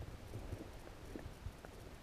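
Faint, muffled knocks and bumps of water against a submerged camera, several a second at an irregular pace, over a low rumble.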